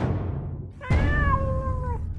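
A deep hit, then about a second in a single long cat meow, falling slightly in pitch, over a low rumble: the sound sting of the show's cat logo.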